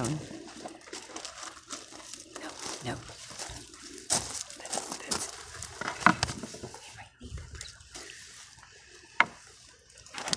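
Footsteps crunching on loose gravel and rustling handling noise, irregular and uneven, with two sharp knocks, about six seconds in and about nine seconds in.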